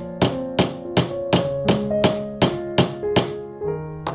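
A small wooden-handled hammer striking the end of a steel rod about ten times in an even rhythm, roughly three blows a second. Each blow gives a sharp metallic ring.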